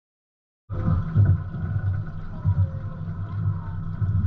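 Silence, then about three-quarters of a second in, the steady low rumble of a fishing boat's engine starts, with a faint higher steady hum above it.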